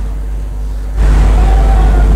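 A loud, steady low rumble of background noise that steps up suddenly about a second in.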